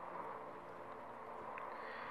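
Faint, steady background noise with a low hum under it, with no distinct events.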